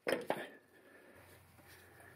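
A few faint short clicks in the first half second, then near silence.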